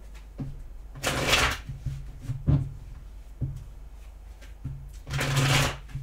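A deck of tarot cards being shuffled by hand: two short bursts of shuffling, about a second in and near the end, with a few light taps of the cards between.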